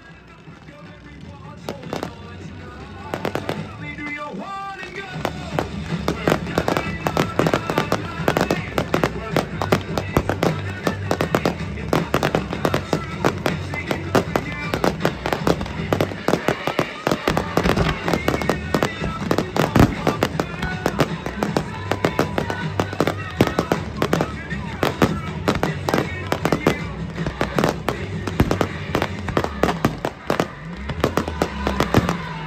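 Fireworks display with a dense, rapid run of bangs and crackles that builds over the first few seconds and then keeps up, with music playing underneath.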